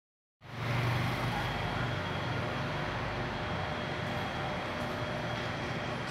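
Steady background noise with a low hum, starting abruptly about half a second in and holding even throughout.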